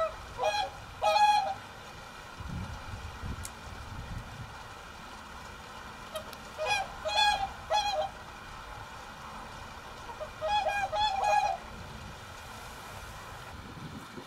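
Whooper swans calling: loud bugling honks in three short bouts, a few calls each, with quiet gaps between.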